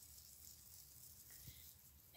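Near silence: room tone, with one faint tick about one and a half seconds in.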